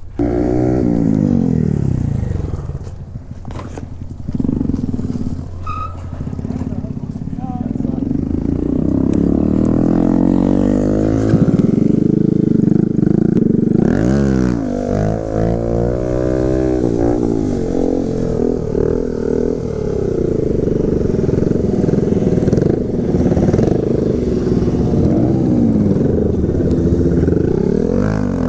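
Small motorcycle engine running and revving as it is ridden. Its pitch falls over the first two seconds and swings up and down quickly about halfway through.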